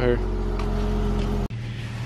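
A car engine idling steadily with a low, even hum. It cuts off abruptly about one and a half seconds in, leaving a quieter low hum.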